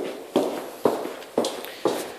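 Footsteps on bare hard flooring, about two steps a second, each step ringing briefly in the empty, unfurnished room.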